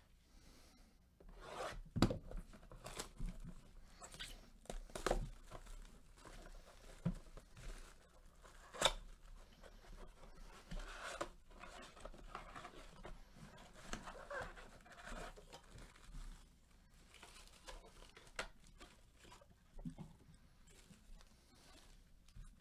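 Trading-card blaster box being torn open by hand: its plastic wrap and cardboard crinkle and rip in irregular bursts, with a few sharp snaps, then the foil card packs rustle as they are pulled out and stacked.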